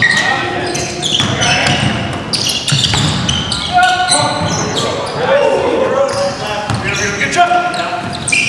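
Basketball game in a gymnasium: the ball bouncing on the hardwood court amid sharp short squeaks and players' voices calling out.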